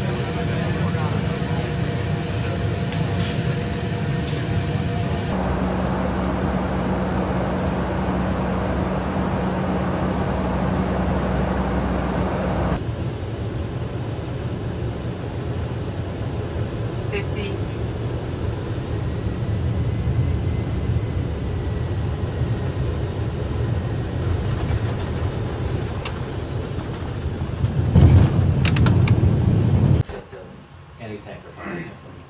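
Steady engine drone and cabin noise inside a military transport aircraft. The character of the noise changes abruptly about five and about thirteen seconds in, and it grows louder for a moment near the end.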